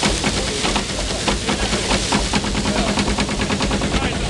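Belt-driven wooden threshing machine running: its drum makes a fast, steady rattling clatter over a low hum.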